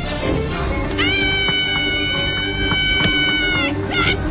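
A woman's long, very high-pitched shriek, a mock banshee wail, rising sharply about a second in, held on one pitch, then breaking off near the end, with a second wavering wail starting just after. Music plays underneath.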